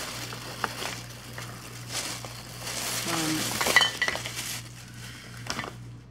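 Handling noise of Wet n Wild liquid lipstick tubes clinking and rattling against one another as they are taken out of a bag and set down, with bag rustling and a burst of sharper clinks just before four seconds in.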